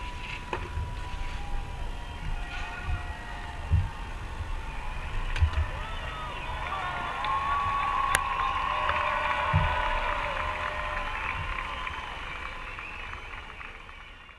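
Crowd cheering and whistling at the close of a fireworks display, swelling in the middle, with a few dull distant bangs; it fades out near the end.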